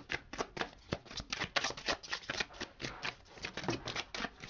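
A tarot deck being shuffled by hand: a quick, uneven run of card clicks and flicks.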